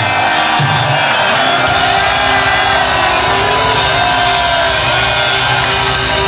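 Live pirate-metal band playing loud through a club PA, with a heavy hit right at the start followed by a sustained wall of distorted guitars and cymbals. Crowd shouting and singing along are mixed into it.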